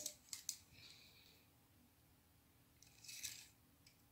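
Faint handling of a retractable tape measure: two small clicks at the start, then a short scraping rustle about three seconds in as the tape is pulled out along knitted fabric.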